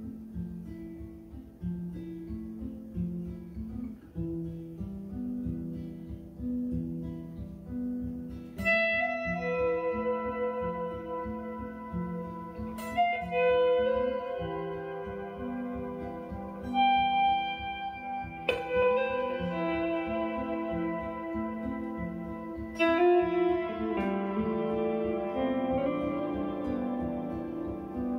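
Instrumental intro on two guitars, a small-bodied acoustic guitar and a hollow-body archtop electric guitar. A repeating low picked figure runs throughout, and about eight seconds in, higher ringing melody notes join it, with new phrases starting around 13, 18 and 23 seconds.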